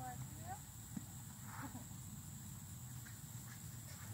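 Horses taking hand-fed treats at a metal farm gate: a single sharp knock about a second in and a short breathy blow a little later, over a steady high insect drone.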